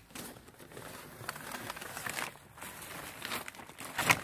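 Plastic feed bags crinkling and rustling as they are handled, a continuous crackle of many small ticks.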